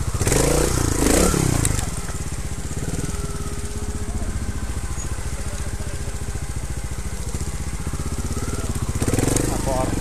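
Trials motorcycle engine running at low revs with a steady firing pulse, blipped louder with rising and falling revs in the first two seconds and again near the end.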